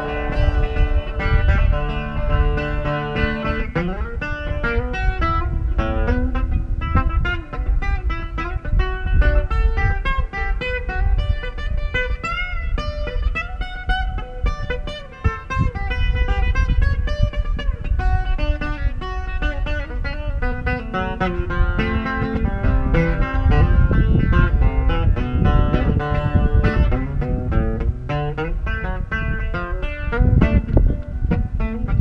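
Acoustic guitar played through an amplifier, an instrumental passage of strummed and picked notes between sung verses.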